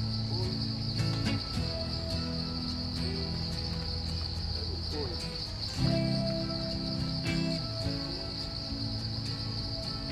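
Steady, unbroken high-pitched drone of an insect chorus in tropical forest, over background music with sustained low notes.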